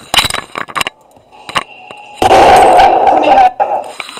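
A downloaded gunshot sound effect is played back on a video being edited. It is one loud shot a little past the middle, which rings on for about a second before dying away. A few short clicks come before it.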